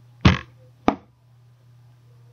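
A short rush of breath against the microphone, then a single sharp click about a second in, over a steady low electrical hum.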